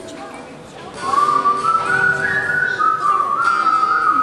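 A whistled melody enters about a second in, loud and clear over soft acoustic guitar accompaniment.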